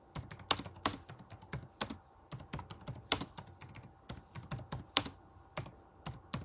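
Fingers typing in an irregular run of taps and clicks, several a second with short pauses, while searching for a Bible verse.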